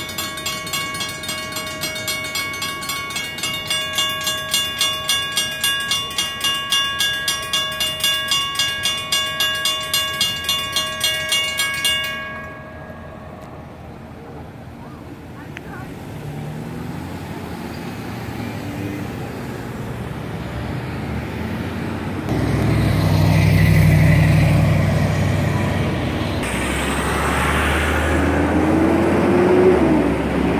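Federal Signal railroad-crossing bell ringing in rapid, even strokes, stopping suddenly about twelve seconds in as the crossing clears and the gates rise. Road traffic then passes over the crossing, louder in the last several seconds.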